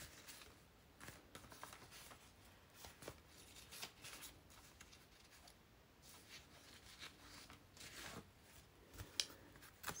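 Faint rustling and soft handling of old paper pages, with scattered light scrapes and a sharper tick about nine seconds in.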